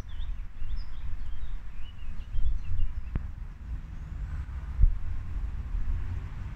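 Low, uneven outdoor rumble, with faint bird chirps over it in the first half and a single sharp click about three seconds in.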